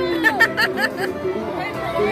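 Crowd of spectators chattering and calling out over one another, with a quick run of sharp clicks in the first second.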